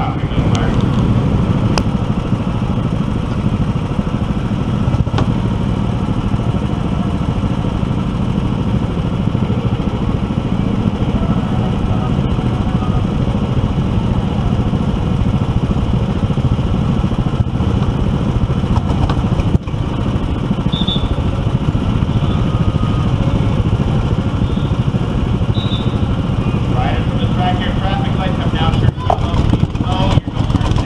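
Go-kart engine running steadily as the kart drives around a track, heard from the driver's seat.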